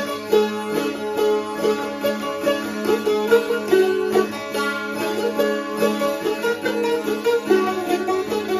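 Hungarian citera (fretted folk zither) played solo: a folk melody stopped on the melody strings and struck in a quick, even rhythm, over a steady drone from the open strings.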